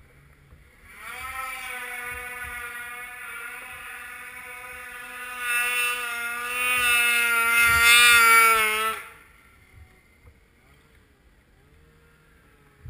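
Snowmobile engine running at steady high revs with a slightly wavering pitch. It comes in about a second in, grows louder and then cuts off abruptly about nine seconds in.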